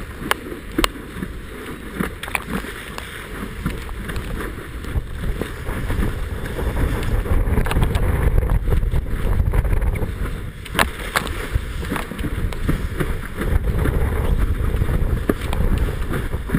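Wind rumbling on the microphone as a kiteboard planes fast over choppy water, with the hiss of spray and sharp knocks as the board slaps the chop. The rumble grows louder about six seconds in and again near the end.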